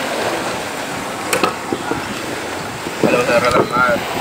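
Steady outdoor wind and surf noise on the microphone, with one sharp knock about a second in and a few faint ticks after it; a voice comes in near the end.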